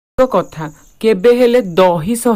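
A person's voice speaking in narration, with a short pause at the start.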